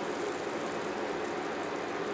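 Ground turkey mixture in a tomato-and-oil sauce sizzling steadily in a stainless steel skillet, as an even hiss with no distinct knocks.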